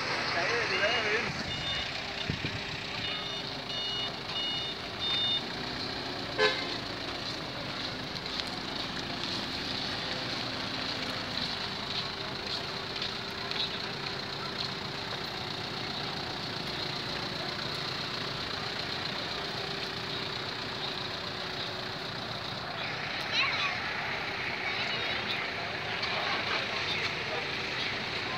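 Street noise of traffic and a crowd's voices, with a run of short high beeps, like a vehicle horn, a few seconds in.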